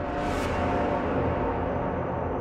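Eerie background music over steady low held tones, with a swelling whoosh that peaks about half a second in.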